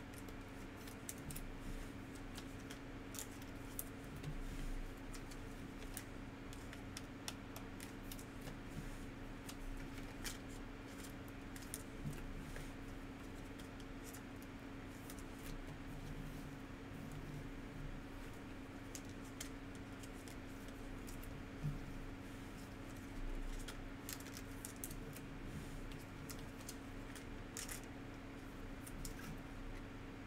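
Trading cards and plastic card holders being handled: scattered small clicks, taps and slides as cards are sorted and put into top loaders, over a steady low hum.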